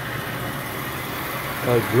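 American Flyer Royal Blue electric toy steam locomotive running steadily on metal track, a smooth even running noise with no chuffing.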